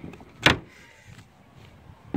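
A single sharp knock about half a second in, then only faint background noise.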